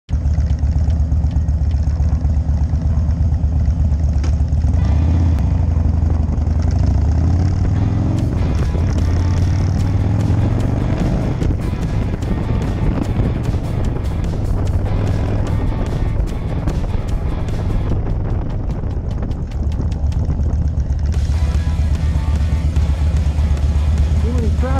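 Harley-Davidson FXDC V-twin engine running, heard from the bike itself, with wind noise on the microphone while riding; the sound changes abruptly a few times, where the shots are cut.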